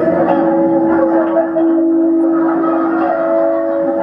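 Electronic drone music from a laptop: a few steady held tones layered together, a lower tone joining under the main one about halfway through and a higher one entering about three seconds in.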